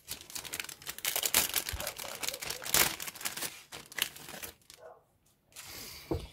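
Plastic model-kit sprues and their packaging being handled: a run of crinkling, crackling plastic, loudest about one and a half and three seconds in, dying away near the end.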